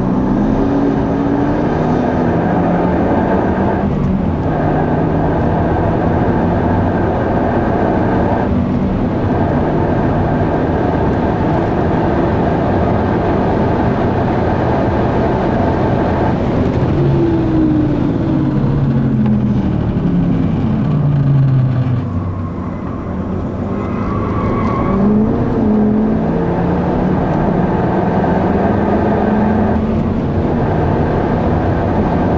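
Mazda 3 MPS's turbocharged 2.3-litre four-cylinder engine, heard from inside the cabin, pulling hard on track: the pitch climbs and drops at upshifts about four and nine seconds in, then falls away over several seconds from about seventeen seconds in as the car slows for a corner. It dips briefly, then climbs again from about twenty-four seconds with another shift.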